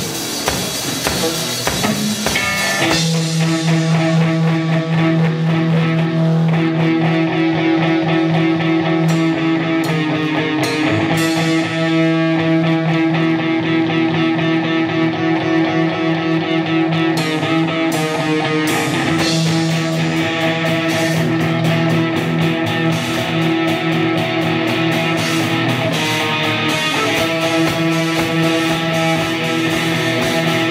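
Live rock band playing an instrumental intro on electric guitars and a drum kit; after a thinner opening the full band comes in about three seconds in, with sustained distorted guitar chords over steady drumming.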